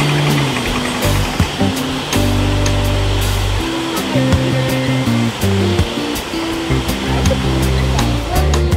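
Water rushing and churning through the open gate paddles into a canal lock as it fills, a loud, steady roar of white water around a narrowboat. Background music plays over it.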